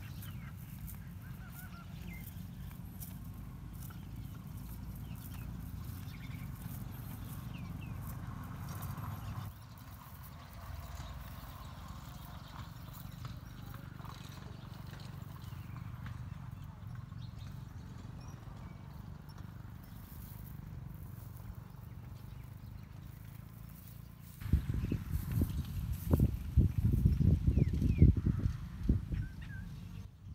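Rural outdoor ambience: a steady low rumble with faint bird calls. For about five seconds near the end, loud, irregular low buffeting and knocks come in and then stop.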